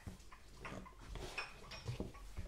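Faint, scattered clinks and scrapes of a teacup and saucer handled close to a microphone, a few light knocks a second or so apart.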